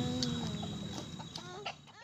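Domestic chickens clucking: a drawn call at the start, then a run of short clucks in the second half, the sound fading out near the end.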